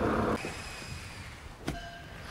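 Television static hiss that cuts off abruptly shortly after the start, leaving a much quieter faint hum, then a single sharp click near the end.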